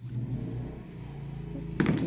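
A steady low background hum, with a short click of handling about two seconds in.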